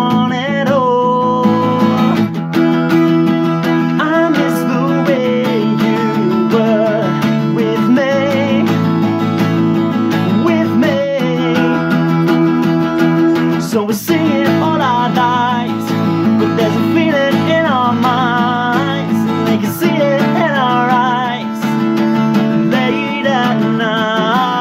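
Acoustic guitar played steadily with a male voice singing an indie pop song over it.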